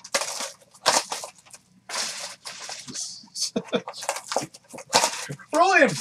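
Foil trading-card pack wrappers crinkling and tearing as packs are opened and the cards handled, in a run of short rustling bursts. A man's voice breaks in near the end.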